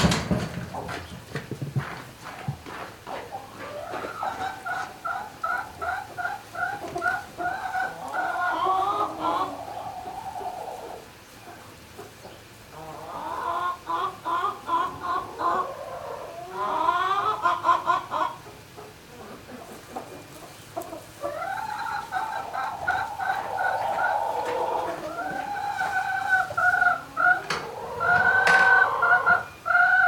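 Barnyard poultry calling: long bouts of rapid, repeated clucking notes from several birds at once, with brief pauses between bouts.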